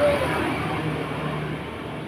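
A road vehicle passing by, its sound slowly fading away, with a faint low steady engine hum under a noisy haze.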